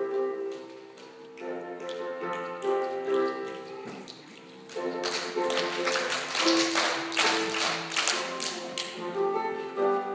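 Children's group singing with musical accompaniment, joined about halfway through by a run of quick hand claps that stops shortly before the end.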